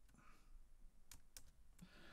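A few faint, sharp clicks of a computer keyboard over near silence, as lines of code are moved in an editor.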